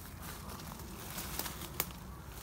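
Footsteps and brushing through woodland undergrowth and dry leaf litter, with two short sharp cracks near the end like twigs snapping.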